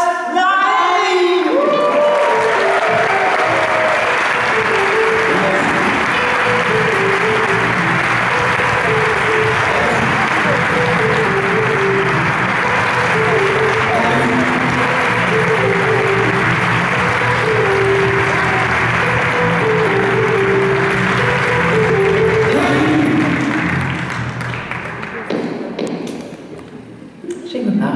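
A concert hall audience applauding steadily while music with a simple repeating melody plays. The applause dies away near the end.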